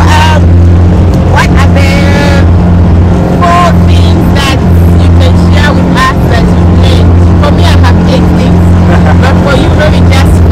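Motorboat engine running steadily at speed, a loud low drone, with voices over it.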